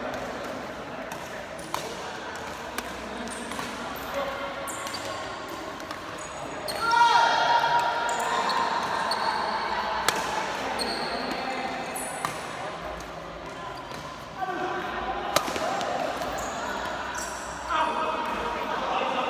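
Badminton rally: sharp cracks of rackets striking the shuttlecock, a strong one about ten seconds in on a jumping smash, with sneakers squeaking on the court floor. A player shouts loudly about seven seconds in, and other voices call out near the end.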